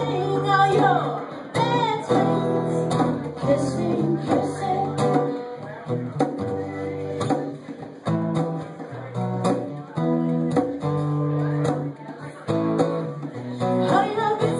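Live acoustic music: an acoustic guitar strummed, with a woman singing.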